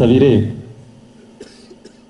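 A man's voice through a handheld microphone: one short, loud vocal sound in the first half-second, then a quiet pause with a faint steady hum and a few small clicks.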